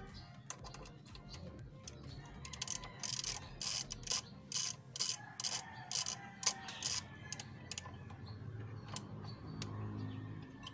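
Socket ratchet wrench driving the ABS sensor's mounting bolt on a Yamaha NMAX V2 front fork. It makes a run of about a dozen quick ratchet strokes from about two and a half to seven seconds in.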